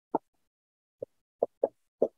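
Dry-erase marker tapping against a whiteboard as electron dots are drawn: four short, uneven taps.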